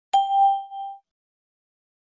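A single bell-like chime, struck once and ringing out for under a second: the cue tone of a recorded listening exercise, sounding just before the next sentence is read.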